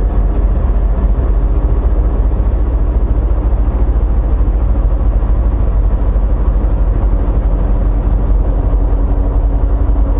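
Semi truck's diesel engine and road noise heard inside the cab at highway speed, a steady low drone. A faint steady hum joins it about eight seconds in.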